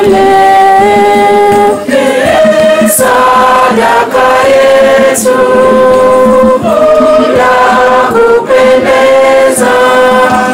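A choir singing an offertory hymn, the voices holding long notes that step to a new pitch every second or two.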